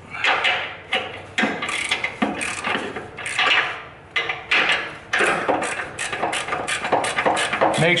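Hand ratchet wrench clicking in quick runs of strokes, with short pauses between runs, as a bolt on a car's lower control arm is run in by hand.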